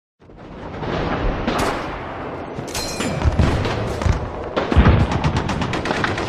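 Battle sound effects fading in: gunfire with deep booms, ending in a rapid run of machine-gun shots.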